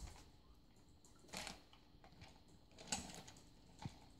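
Near silence broken by three faint, brief knocks, about one every second and a half.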